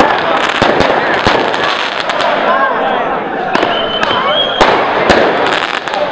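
A string of sharp bangs and cracks going off irregularly, a few each second, over the shouting of a crowd. A steady high whistle sounds for about a second, starting about three and a half seconds in.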